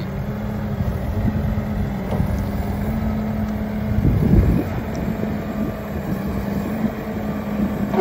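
Deutz diesel engine of a Genie GTH-5519 telehandler running steadily at working speed as the machine is driven, with a brief louder rush about four seconds in.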